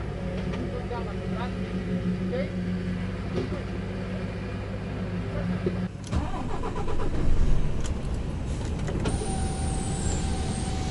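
Truck diesel engine idling steadily under faint voices; about six seconds in it changes abruptly to the engine working as the truck pulls away, louder, with rattles.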